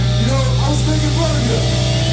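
Live rock band's amplified electric guitars and bass holding one steady, droning low note, with wavering, bending higher tones over it.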